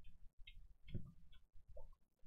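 Faint chewing and mouth noises with a few small clicks, a handful of short sounds spread through, the strongest about a second in.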